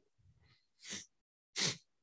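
Two short, breathy bursts of a man's nasal exhalation, about three-quarters of a second apart, the second louder, like a stifled chuckle.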